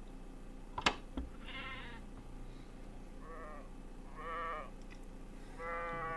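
Sheep bleating four times, each a short quavering call, with a sharp click about a second in.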